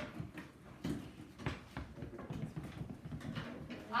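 Scattered light clicks, taps and knocks of classroom activity over a low background murmur.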